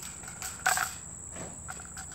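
Insects chirring steadily in a high, even tone, with a short knock about two-thirds of a second in.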